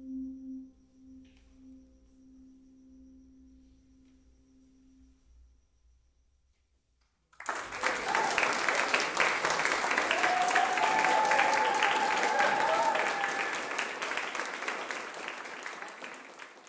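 The song's final chord on piano and toy piano ringing out and dying away over about five seconds, then a brief hush. Then the audience bursts into applause about seven seconds in, and the applause tapers off near the end.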